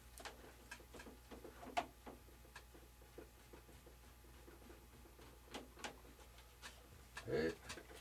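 Faint scattered clicks and light knocks of hands handling an RC biplane's lower wing and its mounting hardware while fitting it to the fuselage, the sharpest click about two seconds in.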